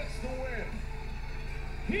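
Wrestling TV broadcast audio with music and a voice over it in the first half second, ahead of the ring announcer naming the winner.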